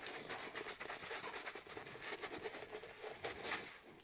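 Faint scrubbing and rubbing of soap lather on a leather dress shoe: a run of small scratchy strokes, a little louder near the end.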